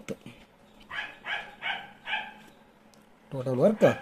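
A dog barking four times in quick succession, about a second in; a man's voice starts near the end.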